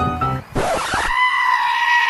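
Piano-like background music ends within the first half second. It is followed by a brief burst of noise and one long, high-pitched scream held steady for about two seconds, dropping in pitch as it cuts off.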